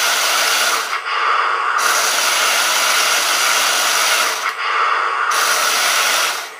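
Heng Long RC tank's drive motors and gearboxes whirring steadily as the tracks run, with two short dips in the sound, about a second in and about five seconds in. The tank is fired on the move, and the Komodo+ unit answers with its brief anti-recoil jerk of the tracks.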